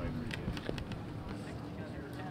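Voices of people talking in the background, with a few short clicks in the first second.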